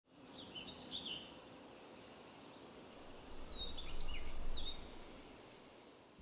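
Birds chirping in two short bouts, about a second in and again around four seconds in, over faint outdoor ambience with a low rumble.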